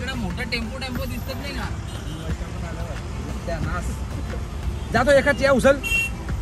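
Men's voices calling out and chanting inside a vehicle's cabin, louder about five seconds in, over the steady low rumble of the engine and road.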